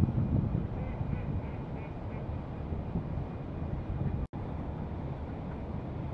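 Faint duck calls in the first couple of seconds over a steady low outdoor rumble. The sound drops out for an instant a little past four seconds in, at an edit cut.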